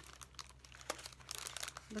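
Loose paper scraps, tags and old book pages rustling and crinkling as hands shuffle through a stack, a run of light, irregular crackles that grows busier in the second half.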